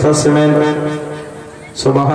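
A man singing a Bengali Islamic gajol through a microphone. He holds one long, steady note that fades away, then starts a new phrase near the end.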